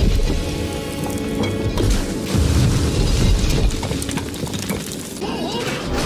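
Film score music over deep booms and crashing sound effects of a stone viaduct breaking up, with the heaviest crashes at the start and again about two to three seconds in.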